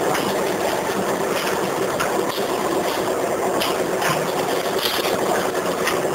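Potato-chip pouch packing machine running: a continuous mechanical clatter with clicks every second or so.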